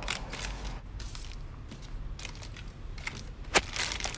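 Plastic gummy-candy packets crinkling and crackling irregularly as they are handled and piled up, with one sharp crackle about three and a half seconds in.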